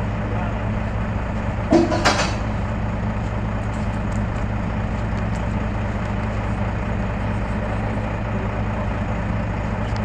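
Heavy diesel truck engine idling with a steady low hum. About two seconds in comes a short, loud burst of hiss.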